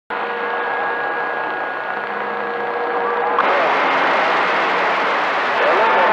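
CB radio receiver on channel 28 hissing with static, with several steady heterodyne whistles over it. About three and a half seconds in, the static grows louder and brighter, and faint wavering tones come through near the end.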